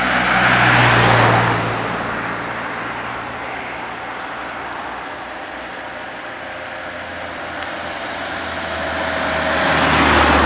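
Road traffic: one vehicle passes about a second in and another near the end, with steady road noise between.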